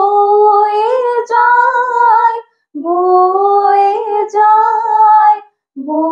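Two teenage girls singing a slow song together in unison with no accompaniment, in long held phrases with short breath pauses between them.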